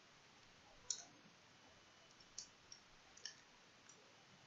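Near-silent room tone with about five faint, sharp clicks from working at the computer as text is edited, the loudest about a second in.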